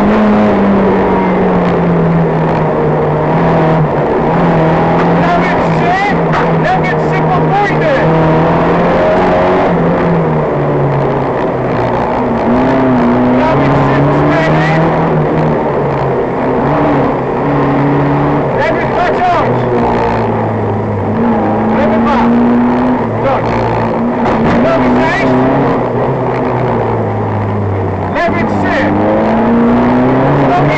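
A Fiat 126p's air-cooled two-cylinder engine driven hard on a gravel rally stage, heard from inside the car. The engine note climbs and drops again and again with throttle and gear, over scattered short clicks and rattles.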